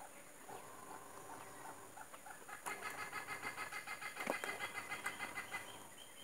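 A chicken clucking. From a little under halfway in there is a fast, even run of short clucks lasting about three seconds, louder than the fainter clucks before it.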